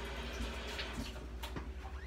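Kitchen sink tap running as hands are rinsed under it, with a light knock about a second and a half in.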